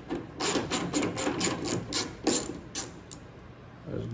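Ratchet wrench clicking rapidly, about five clicks a second, as it backs out an 8 mm bolt holding a pickup truck's tail light. The clicking stops about three seconds in.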